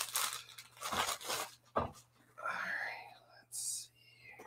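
Packing material rustling and crinkling in several short bursts as a graded comic slab is pulled out of a cardboard shipping box.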